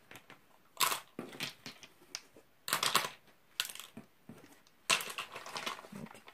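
A run of short rustling and clicking bursts, four or five over a few seconds, from small cosmetic items and their packaging being handled.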